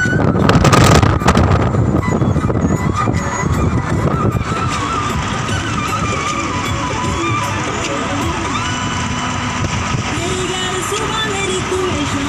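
Moving car's road and wind noise through an open window, with a loud rush of wind across the microphone about a second in.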